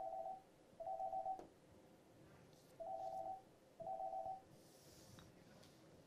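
A telephone ringing faintly in short electronic two-tone rings: two rings about a second apart, then after a pause two more.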